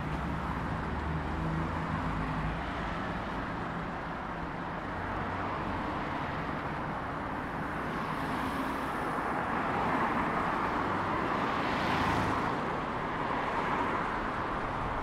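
Street traffic: cars passing on a town road with a steady wash of tyre and engine noise, and a low engine rumble in the first few seconds. One car passes close, swelling to the loudest point about twelve seconds in.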